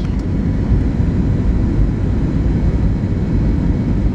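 Steady jet airliner cabin noise on descent for landing: an even low rumble of engines and airflow, heard from inside the cabin.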